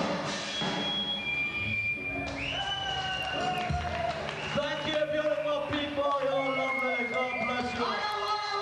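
Live punk rock band in a hall at the tail of a song: voices shouting and talking from the stage and crowd, over the band's instruments and a few high, steady, held whines.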